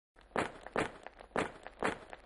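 Footsteps sound effect: four short, even steps falling in two pairs, in time with animated paw prints walking across the screen.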